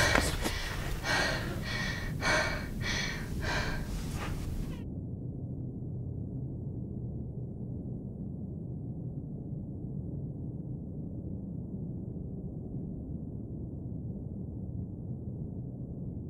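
A girl breathing hard in quick gasps, about two breaths a second, as if just woken from a nightmare. The breathing cuts off suddenly about five seconds in, leaving a steady low rumble.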